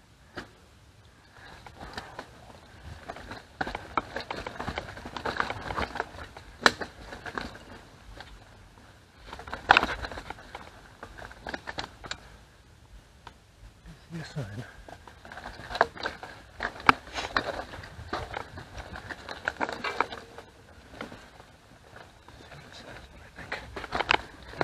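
Mountain bike rolling over rocky, leaf-strewn forest singletrack: tyre noise on rock and dry leaves, with frequent sharp clicks and knocks as the bike jolts over bumps.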